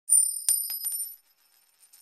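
Intro sound effect for the channel's logo card: a bright, high-pitched metallic ring with a quick run of sharp clicks, lasting about a second.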